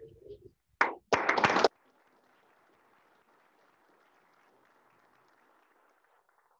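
A short, loud burst of clapping close to the microphone, lasting about half a second from about a second in, after a softer knock at the start; the rest is faint room noise.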